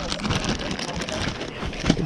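Plastic bags crinkling and crackling as hands rummage through them, pulling a soft-bait packet out of a clear zip-lock bag.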